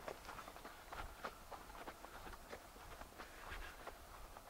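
Footsteps of a person walking over grassy earth, soft steps at about two to three a second.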